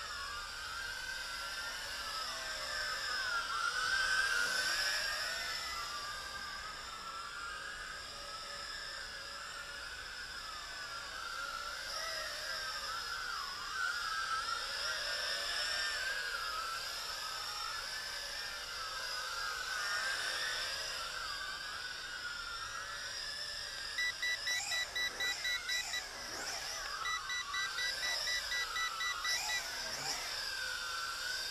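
JJRC X6 hexacopter's small electric motors and propellers whirring, the pitch wandering up and down as the throttle changes. Near the end come two runs of quick electronic beeps, each about two seconds long.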